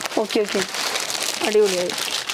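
Plastic packaging around cloth goods crinkling as it is handled, in a crackly rustle about midway, with short bits of talk before and after.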